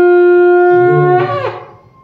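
Conch shell (shankh) blown in one long, loud, steady note that wavers and falls in pitch as the breath runs out, fading away about a second and a half in.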